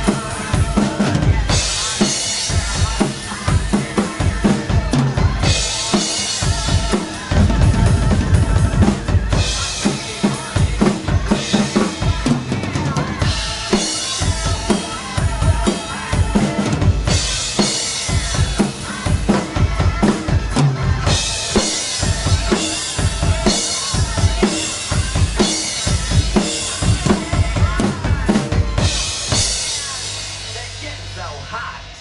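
Acoustic drum kit played hard and fast: steady kick drum with snare rimshots, and stretches of cymbal crashes that come and go every few seconds.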